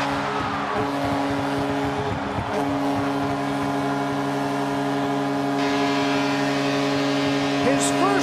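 Vancouver Canucks' arena goal horn sounding one long, steady tone over a cheering crowd, signalling a home-team goal.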